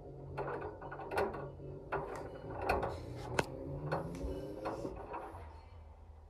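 Front-loading washing machine drum turning with water inside, a small ball tumbling in the steel drum and knocking against it irregularly, over a steady low motor hum.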